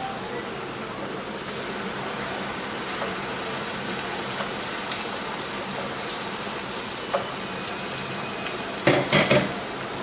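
Chopped onions and garlic sizzling steadily in hot oil in a frying pan while spinach purée is poured in. A few sharp knocks a little before the end as the purée is scraped out of a steel bowl with a wooden spatula.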